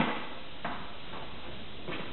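Quiet room hiss with a sharp knock right at the start, then two faint knocks about a second apart.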